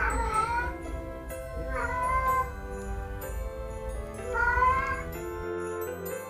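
A domestic cat meowing loudly three times, drawn-out calls about two seconds apart.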